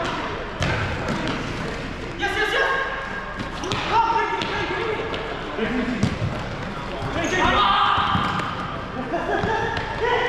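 Futsal ball being kicked and struck on a sports hall court, with sharp knocks and a strong kick about six seconds in. Players are shouting to each other in the reverberant hall.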